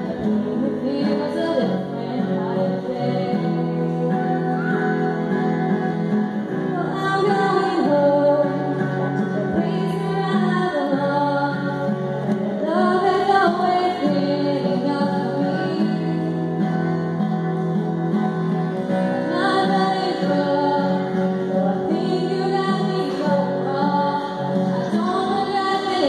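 A woman singing a song into a microphone, accompanied by acoustic guitar.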